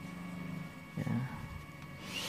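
A man's voice: a short low hum, as in a hesitation, then a brief spoken "ya" about a second in.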